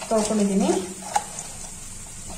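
A brief spoken word, then wet spinach leaves squelching and crackling as a hand squeezes them in a perforated stainless-steel colander, with a few light clicks against the steel.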